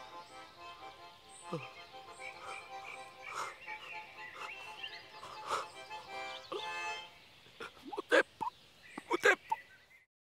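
Accordion playing a lively tune that fades away over the first seven seconds or so. Near the end, a few short, sharp high cries.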